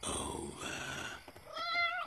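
A cat growling roughly, then giving a short pitched yowl near the end as it springs away.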